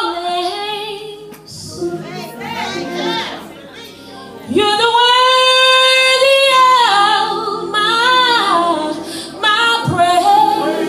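A woman singing a gospel song solo, sliding up into a long held note with vibrato about halfway through.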